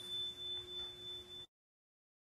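Faint steady electronic tone at two pitches, one low and one high, lingering from the closing logo sound, then cut off to dead silence about one and a half seconds in.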